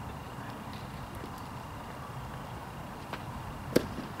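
Outdoor ballfield ambience, then near the end a single sharp crack as a pitched baseball reaches home plate.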